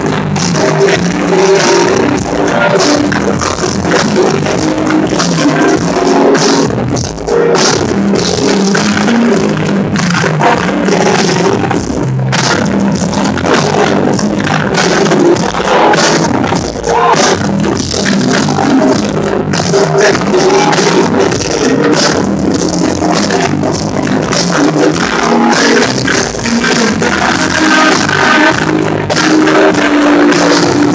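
Loud live music at a hip-hop concert, played through the venue's sound system.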